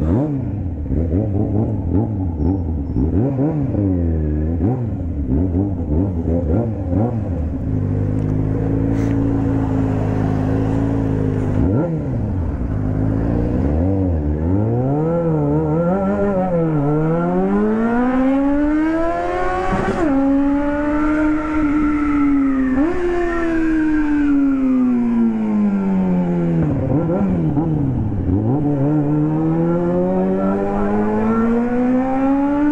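Yamaha XJ6 inline-four motorcycle engine heard from the rider's seat, its revs climbing through the gears with sudden drops at each upshift, a steady cruise for a few seconds, then the revs falling as it slows and rising again near the end.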